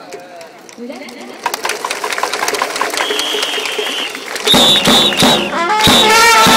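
Japanese baseball cheering section: crowd voices and scattered claps building up, a held high note about halfway, then near the end trumpets and drums strike up loudly into a player's fight song.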